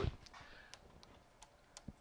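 About half a dozen faint, light clicks at irregular intervals: hand contact with the lathe's tool post and cross-slide while the spindle is stopped.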